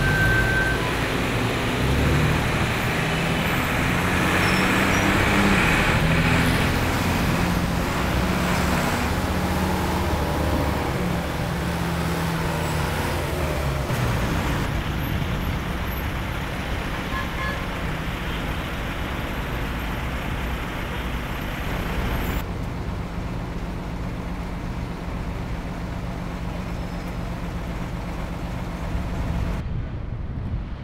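Busy city street traffic of cars and buses. A nearby engine's low hum shifts up and down in pitch through the first half. The sound changes abruptly about halfway through and again about three quarters in.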